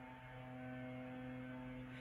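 Leaf blowers running, heard as a faint, steady low drone.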